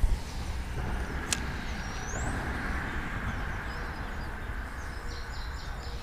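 Steady rush of creek water running over a shallow riffle, with wind rumbling on the microphone. A single sharp click about a second in, a thin rising bird chirp about two seconds in, and a quick run of short bird chirps near the end.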